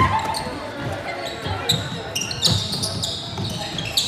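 A basketball bouncing on a hardwood gym floor during play, with short high sneaker squeaks and shouting voices of players and spectators, all echoing in the large hall.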